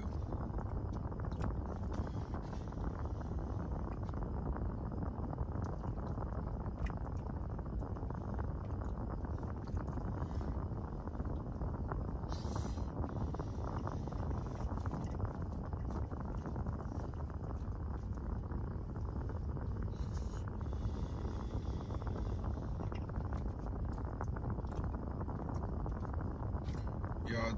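Steady low rumble inside a car cabin, with a couple of brief rustles about twelve and twenty seconds in.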